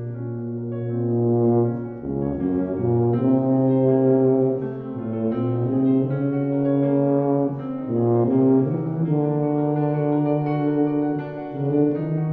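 Tuba playing a slow classical melody of long, held low notes, the pitch changing every second or two.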